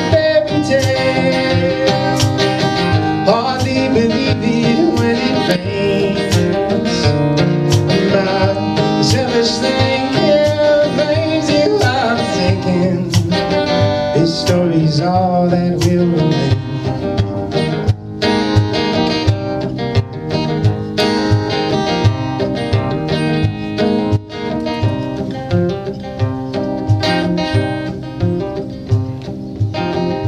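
Acoustic guitar played solo in an instrumental break of a folk-style song, picked note by note; the playing thins out to sparser picking in the second half.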